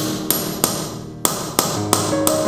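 Mallet striking a steel pricking iron to punch stitching holes through leather on a hard board: about five sharp knocks, roughly a third of a second apart, with background music playing under them.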